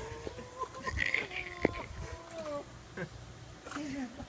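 A person's drawn-out, wavering moans and whimpers, a reaction to the shock of cold pool water. There is one short sharp click about a second and a half in.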